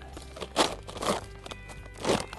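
A plastic sap-collection bag and its spout rustling and crinkling as they are twisted onto a maple tap, in two short bursts about half a second and a second in, over faint background music.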